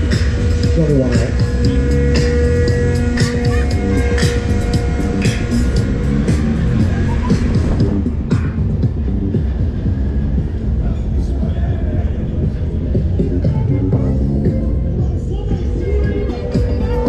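Loud pop or dance music playing from a funfair ride's sound system.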